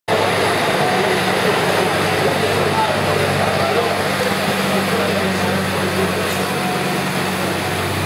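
Massey Ferguson 7490 tractor's diesel engine running at a steady, even speed as the tractor moves slowly along the pulling track, with background voices.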